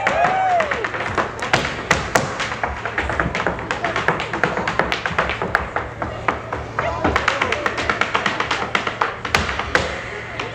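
Irish dancer's hard shoes striking a wooden stage in a rapid, rhythmic run of sharp taps and clicks.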